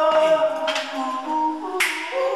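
Music: held, choir-like sung chords with two sharp finger-snap hits about a second apart on the beat.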